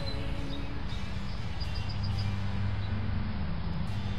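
Steady low hum of road traffic and outdoor background noise, with a few faint high chirps about halfway through.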